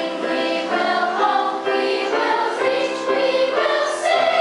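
A large school choir singing, its sung notes moving along every half second or so.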